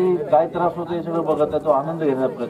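A man speaking into a handheld microphone.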